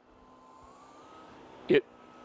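Dyson V11 Outsize cordless stick vacuum running with a faint high motor whine that rises in pitch about half a second in and then holds. This is the motor revving up as the vacuum senses carpet and raises its power.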